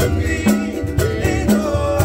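Acoustic band playing live: two ukuleles strummed and two skin drums beaten with sticks in a steady beat, with men's voices singing.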